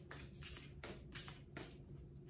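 Tarot cards being handled: a faint run of short papery swishes, about two or three a second, over a low steady hum.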